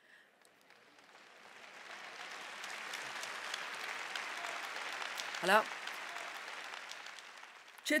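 Audience applause that builds over a couple of seconds, holds, then dies away, with a brief voice sound about five and a half seconds in.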